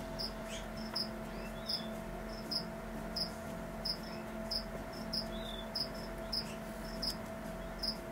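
Short high-pitched chirps repeating evenly, about three every two seconds, over a faint steady hum.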